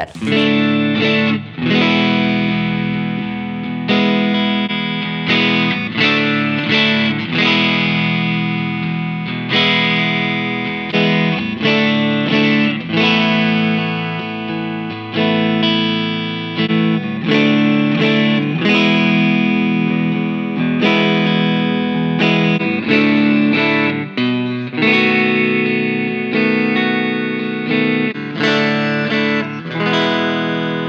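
Electric guitar played through a UAFX Dream '65 Reverb Amp pedal, a simulation of a '65 Fender Deluxe Reverb amp, recorded direct with no amplifier. Chords are struck every second or two and left to ring out with reverb.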